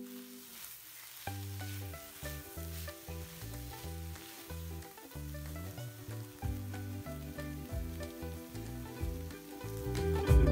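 Shredded cabbage and green capsicum sizzling in a frying pan as they are stir-fried and turned with a spatula, over quieter background music with a low, stepping bass line.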